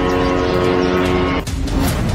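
A steady, even-pitched engine buzz of a drone in flight over a low rumble. The buzz breaks off about a second and a half in, and a couple of sharp cracks follow.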